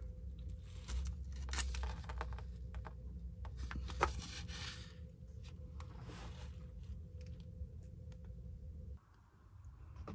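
Plastic squeeze bottle of gear oil being squeezed and handled as oil is pumped into a manual transmission's fill hole, giving irregular crinkling and creaking with a few sharp clicks. A steady low hum runs underneath and stops about a second before the end.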